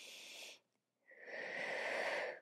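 A woman breathing audibly through a Pilates exercise: a short inhale, then about a second later a longer, louder exhale as she pulls the reformer carriage back in with her abdominals.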